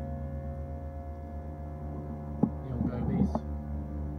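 Slow ambient drone music: sustained tones held over a low, evenly pulsing hum. A sharp click about two and a half seconds in is followed by a brief jumble of noise lasting about a second.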